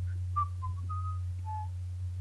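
A person whistling four short notes under his breath, the third held longest and the last the lowest, over a steady low electrical hum.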